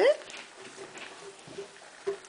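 A rising voice trails off right at the start, the end of a child's spoken question. Then a quiet room with only faint small sounds.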